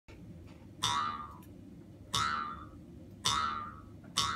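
Mukkuri, the Ainu bamboo mouth harp, sounded by tugs on its string: three twangs a little over a second apart, each one's overtones sliding down in pitch as it fades.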